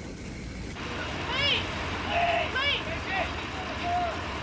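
Short shouted voices over a steady rushing noise that comes in about a second in.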